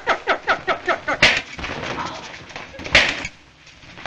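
Two loud wet splats of thrown clay hitting a wall, about a second in and again near three seconds. Before them comes a quick run of short sounds, about five a second, each falling in pitch.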